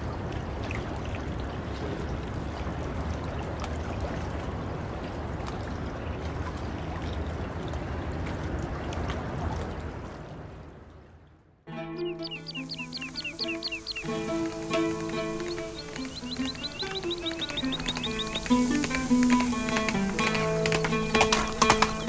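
Steady rush of flowing river water that fades out about ten seconds in. After a brief near silence, instrumental music starts suddenly with held notes and a slowly falling line, and short sharp taps join near the end.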